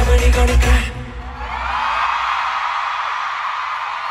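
Live K-pop dance track with a heavy bass beat over the arena sound system, cutting off about a second in as the song ends. A large audience then breaks into steady, high-pitched screaming and cheering.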